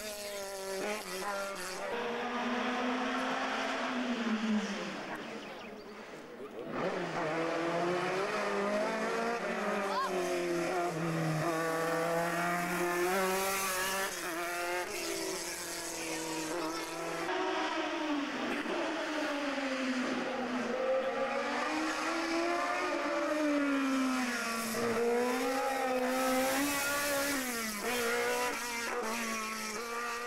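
Single-seater racing car engines revving hard up through the gears and easing off for the bends, as several cars climb the hill one after another. There is a brief lull about six seconds in.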